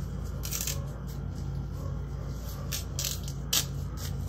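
Malunggay (moringa) branches being handled and stripped by hand: scattered crisp rustles and small snaps of leaves and stems, the sharpest about three and a half seconds in, over a steady low hum.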